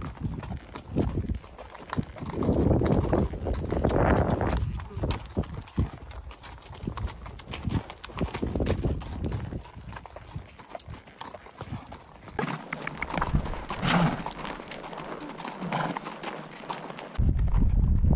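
Haflinger horses walking on a gravel track, their hooves clip-clopping in a steady rhythm, heard from the saddle.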